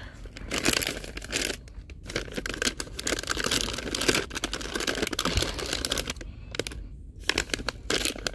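Plastic pouch of Cascade Complete dishwasher pods crinkling as it is handled and pulled from the shelf. The crinkling comes in spells with two short pauses.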